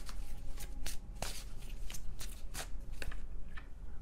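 A deck of tarot cards being shuffled by hand: a quick, irregular run of sharp card clicks and flicks, several a second.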